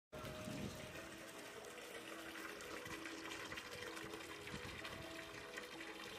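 Continuous running and lapping water in a shallow pool where an American beaver is swimming.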